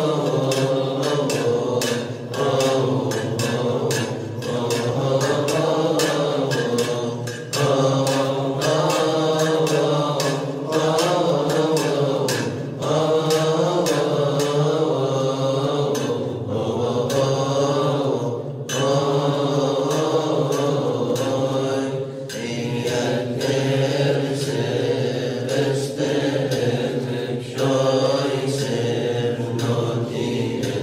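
Monks' voices singing Coptic liturgical chant: long, winding sung phrases over a steady held low note, with brief breaks between phrases every few seconds.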